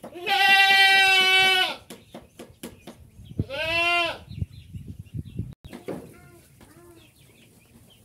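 Goats bleating: a loud, long bleat of about a second and a half at the start, a shorter bleat that rises and falls about three and a half seconds in, and fainter bleats around six to seven seconds in. Light clicks and knocks come between the calls.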